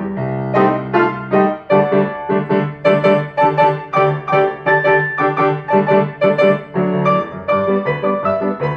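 Grand piano played four hands, two players at one keyboard. Held chords for the first second and a half give way to a steady run of struck notes and chords, about three a second.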